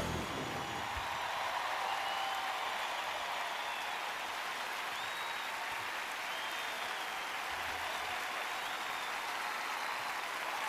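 A large concert audience applauding steadily after a song, with a few whistles rising above the clapping. The band's last chord dies away in the first half-second.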